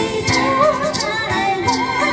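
A woman singing into a microphone, her held notes wavering with vibrato, over a backing track with steady sustained tones and percussion hits.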